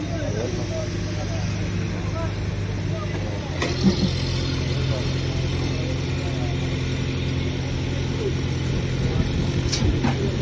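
Diesel engine of a railway breakdown crane running steadily as it holds a wagon bogie on its hook; the engine note shifts a little over three seconds in. A sharp metallic knock comes about four seconds in and another near the end, with workers' voices in the background.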